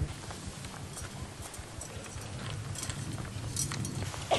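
Quiet outdoor ambience: a low steady rumble with scattered light clicks and clinks, a few sharper ones near the end.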